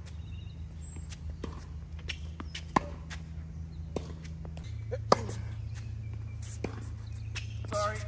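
Tennis ball being struck by rackets and bouncing on a hard court during a rally: a series of sharp, irregularly spaced pops, the loudest about three and five seconds in.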